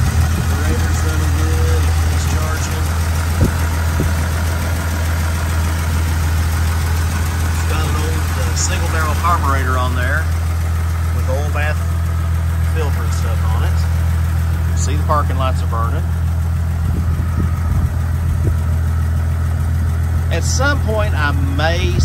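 A 1950 Dodge Coronet's flathead straight-six idling steadily with the hood open, running smooth.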